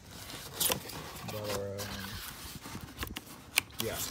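Handling noise: rustling with a few sharp clicks, about a second in and twice more near the end, as the parts are moved about.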